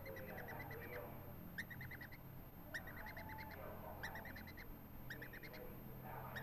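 Yellow-sided green-cheeked conure chick giving soft, quick chirps in short runs of four to six notes, several times over, from a just-fed chick settling toward sleep.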